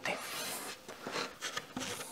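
Faint rubbing and scraping of a hand and a wooden veneered board being handled, with a few soft strokes.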